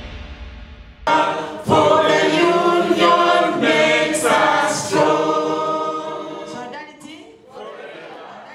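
A group of people singing together, many voices at once, starting about a second in as the tail of a theme tune dies away; the singing grows quieter near the end.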